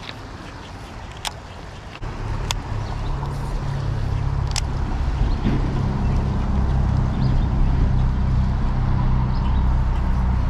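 Shallow river running over stones, a steady rushing hiss. From about two seconds in, a low rumble buffets the microphone and grows louder, with a few sharp clicks over it.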